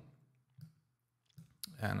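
Computer mouse clicks: a faint tick about half a second in and a sharper click near the end, in an otherwise quiet room.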